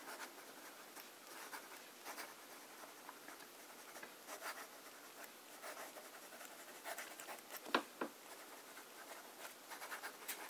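Montblanc 344 fountain pen's fine nib writing on notebook paper: a faint, intermittent scratching of handwriting strokes, with a couple of sharper ticks about eight seconds in. The nib writes smoothly.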